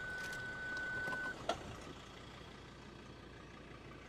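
Car parking-sensor warning tone held as one continuous high beep, the solid tone that signals an obstacle very close. It cuts off about a second and a half in, and a single click follows.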